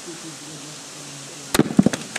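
A stone slammed down onto a coconut on bare rock: one sharp crack about a second and a half in, then a quick clatter of smaller knocks as the stone and nut bounce. The blow glances off and knocks the coconut aside instead of splitting it.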